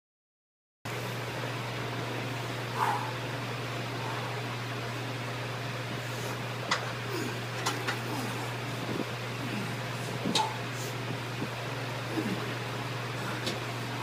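A steady ventilation hum fills a small room, starting abruptly just under a second in. Over it come a few short sharp clicks and knocks as heavy iron hex dumbbells are lifted from a rack and carried to a bench.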